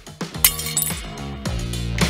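Background music, with a brief bright glass clink about half a second in as a work boot steps onto a 6 mm tempered glass pane.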